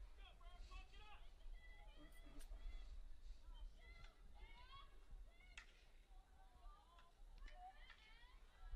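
Very faint, distant voices calling out across the field over a low rumble, with a few sharp clicks.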